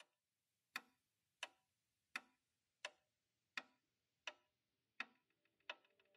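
Eight sharp ticks at an even pace, about three every two seconds, over near silence, like a clock ticking.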